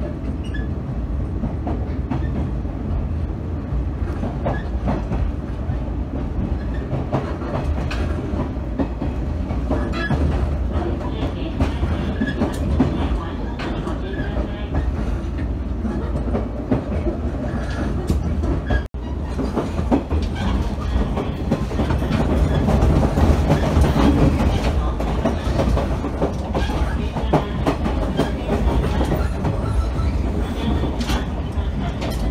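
Cabin running noise of a JR West 113 series electric train pulling out of a station: a steady rumble with scattered wheel clicks and knocks. It cuts out for an instant about two-thirds of the way through, then comes back somewhat louder.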